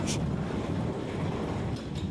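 Steady rushing and rumbling of a working water-powered grist mill, its shafts and grinding machinery turning.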